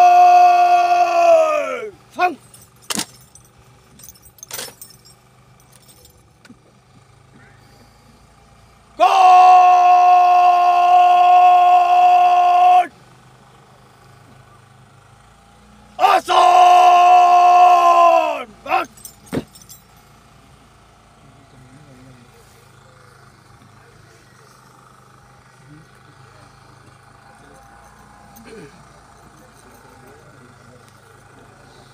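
Long, drawn-out shouted drill commands from a parade commander, each call held on one steady pitch and dropping away at its end. There are three: the tail of one near the start, a long one of about four seconds, and a shorter one later. A few sharp clicks follow the calls, and a low steady background fills the last third.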